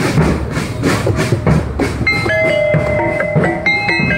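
Marching bass drums and snares of a street drum band beating a fast, steady rhythm; about halfway through, a melody of held notes comes in over the drums.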